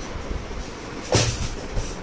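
Plastic wheels of a baby walker rumbling across a tiled floor, with a sharp knock about a second in as the walker bumps into the sofa, and a smaller one near the end.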